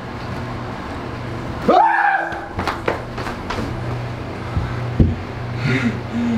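Gloved hands slapping and knocking against a wall while swatting at a yellow jacket: a few sharp knocks around the middle, the loudest about five seconds in, over a steady low hum.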